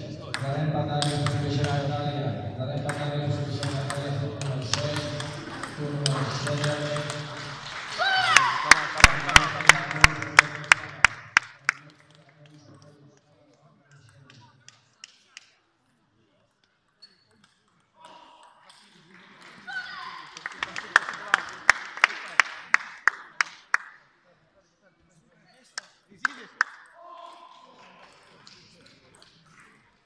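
Celluloid-style table tennis ball clicking back and forth between bats and table in two quick rallies, each a dozen or so sharp ticks at about three to four a second, the first about eight seconds in and the second about twenty seconds in. Before the first rally, a steady hum and voices fill the hall.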